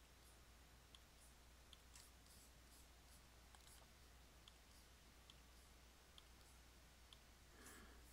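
Near silence with faint computer mouse clicks, about one a second.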